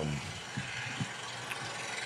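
A few faint clicks over steady room hiss as a man moves in his seat and takes out and handles his smartphone.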